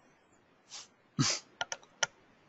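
Clicking at a computer: a soft tap, then a louder short noise just after a second in, then three or four quick sharp clicks near the end.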